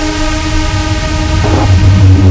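Dark midtempo electronic music: a held synth chord of many steady tones over a low bass, with the bass growing stronger near the end.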